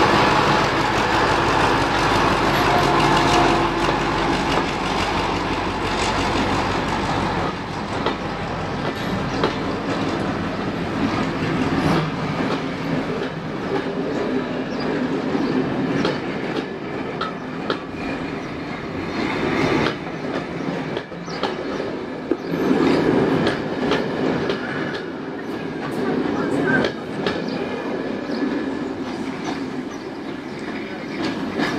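Class 35 Hymek diesel-hydraulic locomotive D7017 passing close by with its engine running for the first several seconds. Its train of passenger coaches then rolls past, the wheels clicking over the rail joints.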